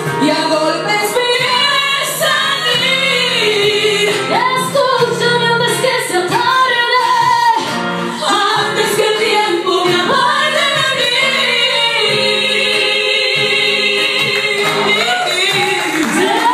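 Women singing live into microphones, with acoustic guitar accompaniment.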